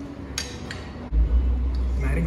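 Two light clinks of a spoon and bowl against a ceramic plate as dal is served. About halfway through, background music with a steady deep bass comes in.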